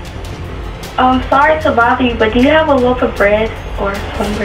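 A voice speaking at a front door, picked up by a doorbell camera's microphone, over a steady low hum and background music.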